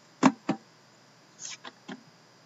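Handling noises from a shrink-wrapped cardboard hockey card box: a sharp knock about a quarter second in and a second tap just after, then a few lighter clicks near the end.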